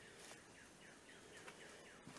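Near silence, with a faint bird in the background giving a quick series of short, falling chirps.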